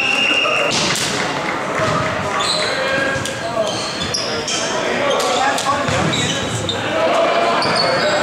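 Athletic shoes squeaking on a hardwood gym floor in many short, high chirps, over a mix of players' voices, with a few sharp ball thuds echoing in a large hall.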